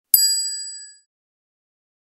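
A single bright ding sound effect that strikes once and rings out, fading within about a second. It is an editing chime marking a checkmark, a win, in a comparison table.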